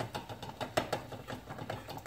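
Alcohol poured in a short splash from a plastic jug into a metal pouring pitcher, with irregular clicks and taps of bottle, paper towel and pitcher being handled, one tap louder than the rest.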